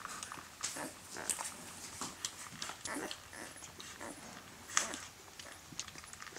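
Eight-day-old puppies nursing, with irregular short grunts, squeaks and suckling smacks.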